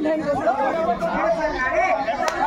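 Many voices talking and calling out at once: the chatter of a crowd of spectators and players around a kabaddi court, with no single voice standing clear.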